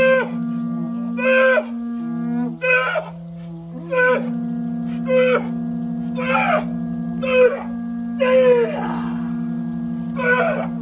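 Two steady, held droning tones with a wind-instrument character. Over them, short falling wavering calls repeat about once a second.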